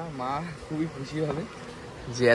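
Men's voices talking quietly and briefly at a table, with no clear words.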